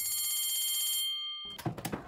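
Electric bell ringing with a rapid rattling shimmer for about a second and a half, then dying away: a school bell marking the end of a lesson. A few short clicks and knocks follow.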